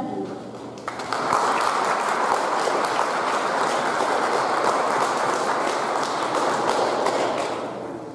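Audience applauding, starting about a second in, holding steady, and fading out near the end.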